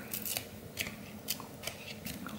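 Glossy trading cards being peeled apart from a stack, a handful of faint sharp clicks as cards that are stuck together come loose.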